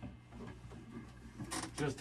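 Faint handling noise as a three-string cigar box guitar is lifted and set upright: soft knocks and rustles of the wooden box and its strap. A single spoken word comes near the end.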